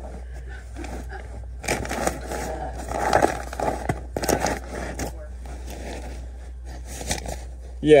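Fiberglass batt insulation rustling and crackling in irregular bursts as a hand pushes through it and brushes the pipe.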